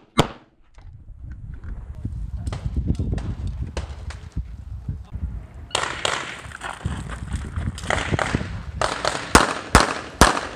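Pistol shots on a practical-shooting stage: a last shot from a 9mm CZ 75 SP-01 right at the start. A few seconds of low rumble follow. From about six seconds in, another competitor's handgun fires a fast, irregular string of shots, about two a second, over a steady hiss.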